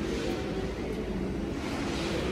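Steady hum of a 240 V section-ring roller's electric motor and gearbox running with no material in the rolls.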